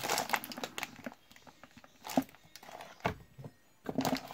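Plastic bag crinkling and rustling as it is pressed down into a cardboard box, the crinkles thinning after the first second into a few separate light taps.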